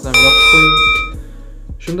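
A bell-chime sound effect for a notification bell: a bright ding of several ringing tones that starts abruptly and lasts about a second.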